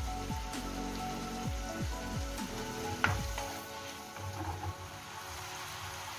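Shrimp sizzling in butter and oil in a frying pan, under background music; a single sharp click about three seconds in.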